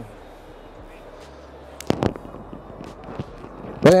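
Electric power tailgate of an MPV being held and stopped by hand on its anti-pinch safety stop, with one sharp knock about two seconds in and a few light clicks after it. The steady hubbub of a busy hall runs underneath.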